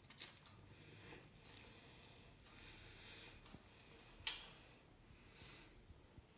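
Soft bread being torn and squished by hand over a glass plate: faint crackly rustling, with two sharp clicks, one just after the start and a louder one about four seconds in.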